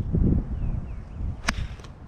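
A five iron striking a golf ball off the grass: one sharp, crisp click about one and a half seconds in, after a low rumble near the start.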